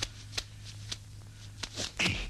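A handful of sharp, irregularly spaced clicks and rustles over a steady low hum on an old film soundtrack, with the last two close together near the end.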